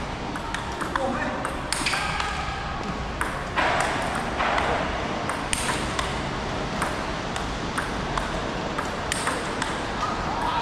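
Table tennis rally: the celluloid-plastic ball clicks sharply off rubber paddles and the tabletop in an irregular quick series. About three and a half seconds in there is a brief rush of hiss-like noise.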